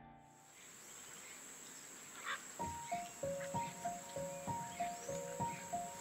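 A steady, high insect drone in natural ambience, with soft background music entering about two and a half seconds in as a repeating descending three-note figure.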